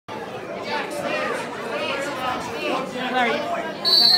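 Many overlapping voices chattering in a gym hall, then a sharp, steady referee's whistle blast near the end, signalling the start of a wrestling bout.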